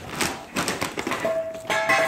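A run of quick taps and knocks, with a steady held musical tone and background music coming in a little past halfway.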